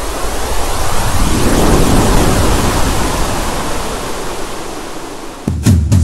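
A swelling whoosh of noise, a transition sound effect, that builds over the first two seconds and slowly thins, ending in a sharp hit near the end as a music jingle starts.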